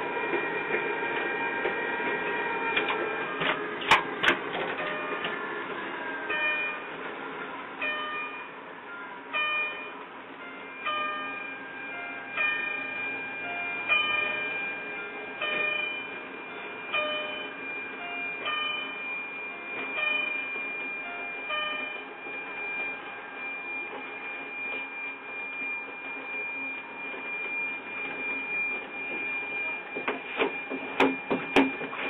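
Miniature electric ride-on train running, its motor giving a steady whine and hum. There is a single knock about four seconds in. From about six seconds a tone pattern repeats about every second and a half, and a high tone holds on to the end.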